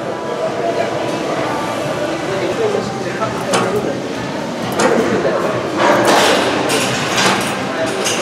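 Voices in a busy gym, with several sharp metal clinks of a cable machine's weight stack during cable kickbacks.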